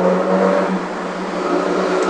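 A steady low hum with overtones, unchanging in pitch, under a constant hiss.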